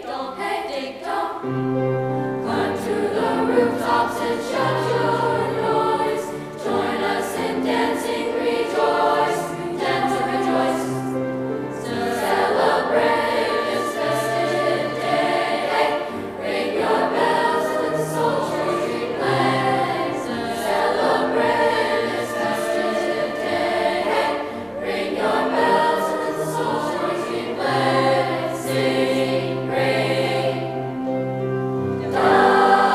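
Youth choir of mostly girls' voices, with a few boys', singing continuously.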